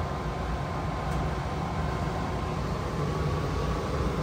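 A 95% high-efficiency mobile home gas furnace running with its burner lit and its blower fan just kicked on: a steady rush of moving air with a faint hum.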